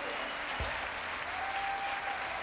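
Concert audience applauding, a steady patter of clapping, with a single low thump about half a second in.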